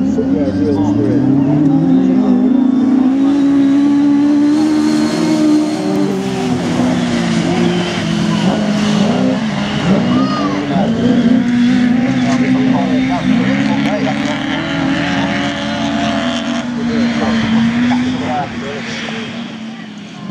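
Several autograss racing cars' engines at full revs on a dirt track, the pitch climbing together in the first couple of seconds as the field pulls away, then wavering up and down with gear changes and throttle through the laps.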